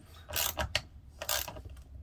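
Socket ratchet wrench clicking in short bursts, about two a second, as it screws a hanger bolt, turned by nuts locked on its plain middle section, down into a wooden floor.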